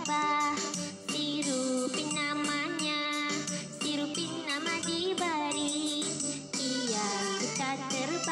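A children's song sung in Malay over an instrumental backing, with the verse about a little bee sung line by line.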